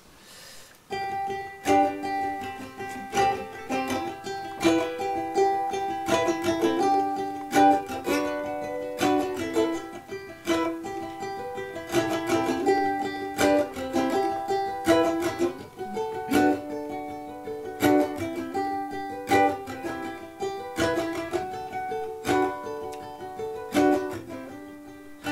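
Ukulele playing a picked melodic intro, notes following one another in a steady repeating pattern, starting about a second in.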